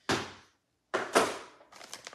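Two short handling noises, one at the start and a louder one about a second in, as a plastic tray and a painted paper sheet are moved on a table.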